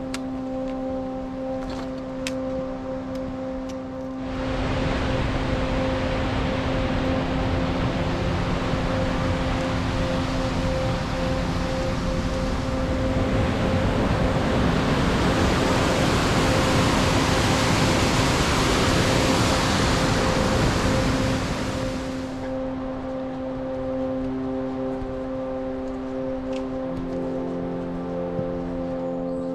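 Rushing mountain stream: a loud, even rush of water that starts suddenly about four seconds in, grows louder in the middle and stops suddenly a few seconds before the end. Background music with long held notes plays underneath throughout.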